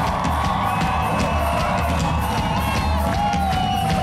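A live ska-rock band plays a steady low beat on bass and drums while the crowd cheers and whoops.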